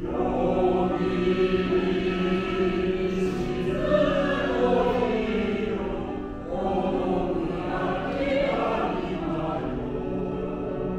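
Choir singing with piano accompaniment, coming in loudly right at the start after a quieter piano passage.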